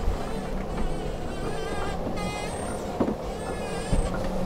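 Steady under-way noise of an IMOCA 60 racing yacht sailing in light wind: water and hull sound with a low rumble. About two seconds in comes a brief wavering high whine, with a fainter one just after, and a couple of short knocks.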